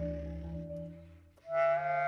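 Contemporary instrumental music with clarinet: held tones die away to a brief near-silence about a second and a half in, then a loud new sustained chord enters.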